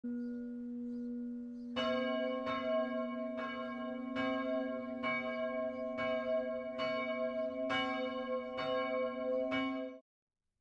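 Church bell tolling: about ten evenly spaced strokes, a little faster than one a second, each ringing on over a steady low hum. The strokes start about two seconds in and the sound cuts off abruptly at the end.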